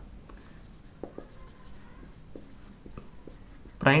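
Felt-tip marker writing on a whiteboard: a run of short, faint strokes and squeaks as letters are written.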